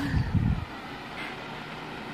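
Handling noise on a phone microphone: a brief low rumble in the first half-second as the phone is moved, then steady low background noise.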